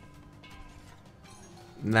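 Quiet online slot game music and sound effects with faint steady tones while the reels spin. A man starts talking near the end.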